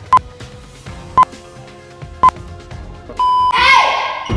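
Edited-in countdown sound effect: three short electronic beeps about a second apart, then a longer beep followed by a falling swoosh near the end.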